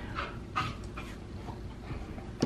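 A dog panting softly, in a quick run of short breaths.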